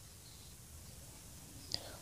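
Faint scratching of a pen writing on paper, with a brief soft click near the end.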